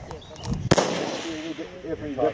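A single precision-rifle shot about two-thirds of a second in, its sharp report trailing off over the next second.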